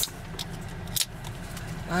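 Aluminium drink can's pull tab snapping open with one sharp click about a second in, over a steady low rumble inside the car.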